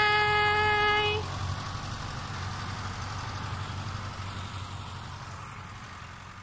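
Diesel farm tractor engines running steadily in a sugarcane field, a low hum that slowly gets quieter.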